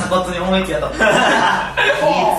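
Young men chuckling and talking over one another.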